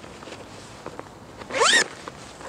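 Zipper of a Laufbursche packSACK Plus backpack pulled open in one quick zip, rising in pitch, about one and a half seconds in, after a few faint ticks as the hands grip the bag.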